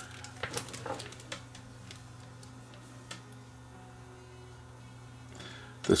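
Light clicks and taps of multimeter test-lead probes and a small resistor being handled, several in the first second and a half and a couple later, over a steady low electrical hum.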